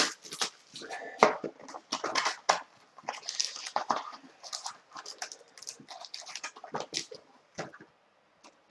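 Plastic wrapping and cardboard packaging of a box of hockey cards crinkling and tearing as it is opened by hand, in irregular short rustles and snaps.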